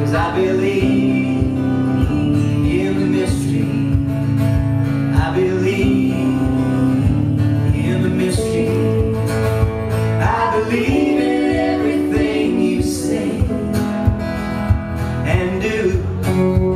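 Live acoustic band playing an instrumental passage of a country-folk song: strummed acoustic guitars over electric bass, with sustained guitar notes on top.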